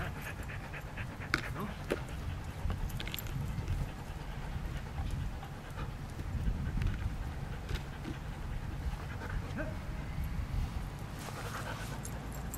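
A border collie panting during disc play, over a steady low rumble with scattered light clicks.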